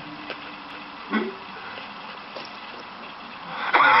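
Steady outdoor street background noise with a faint murmur of traffic, a brief voice sound about a second in; laughter breaks in near the end.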